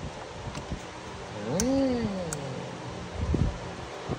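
A single drawn-out vocal call about a second and a half in, rising then falling in pitch, with two sharp clicks during it.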